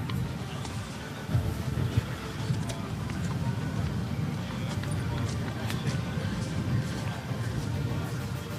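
Open-air show-ring ambience: faint music and indistinct voices over a steady low rumble.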